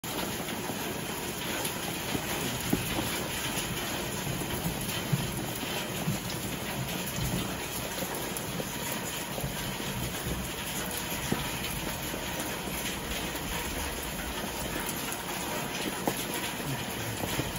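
Steady rain falling on a garden and patio, an even hiss, with a few sharper ticks of single drops spread through it.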